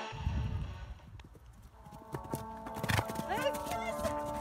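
Horse hooves clopping on turf, with low wind rumble on the microphone at first. Background music comes in about halfway through, and a horse gives a short, rising whinny near the end.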